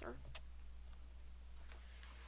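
A short click and faint rustling as a cellophane-wrapped sticker pack is slid across a tabletop by hand, over a low steady hum.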